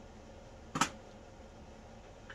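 A single short, sharp clack a little under a second in, like a small hard object knocked or set down on the work table, over faint room hiss.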